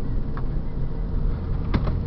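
Steady low rumble of a car's engine and tyres on a wet road, heard from inside the cabin as the car moves off, with two faint ticks.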